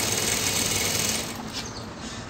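Industrial lockstitch sewing machine running at speed as it stitches a cord into a folded bias-cut strip to make piping, then stopping a little over a second in.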